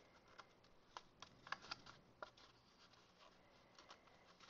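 Very faint, scattered light clicks and rustles of cardstock being handled and pressed together by hand, mostly in the first half.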